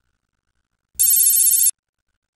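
A single short, high-pitched ring, about three quarters of a second long, starting about a second in and cutting off sharply.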